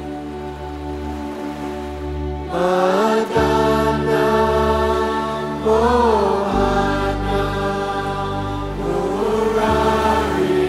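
Devotional mantra chanting set to music: a steady, sustained drone and bass underneath, with a slow, held sung line that comes in about two and a half seconds in and glides in pitch on its long notes.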